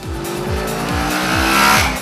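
Twin-cylinder motorcycle engine pulling hard under acceleration, its note rising steadily and getting louder toward the end, over background music with a steady beat.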